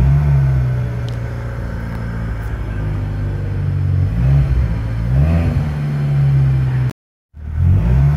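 Freshly rebuilt Ford Ka 1.6 Rocam four-cylinder engine idling steadily, heard from inside the cabin, with two short blips of revs about four and five seconds in. The sound cuts out for a moment near the end.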